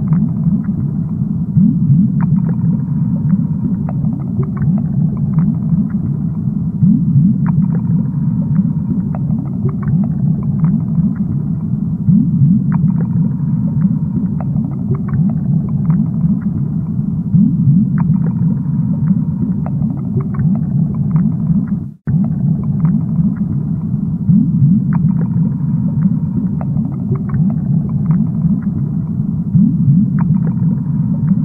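Steady low underwater rumble of an aquarium water ambience, flecked with faint scattered clicks. It drops out for a moment about 22 seconds in, then carries on.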